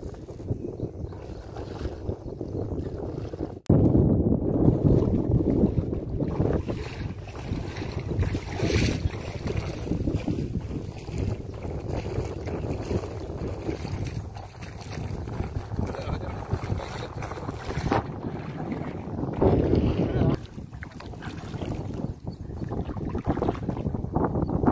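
Wind buffeting the microphone over open water, a rough, fluctuating rumble, with lake water lapping and sloshing around the wading legs. It breaks off for an instant about four seconds in and comes back louder.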